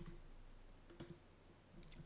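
Faint computer mouse button clicks, about a second apart, against near silence while a context menu is opened.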